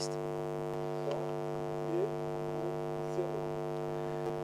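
Steady electrical mains hum with a buzzy stack of overtones, picked up in the recording chain. It continues unchanged through a pause in the speech.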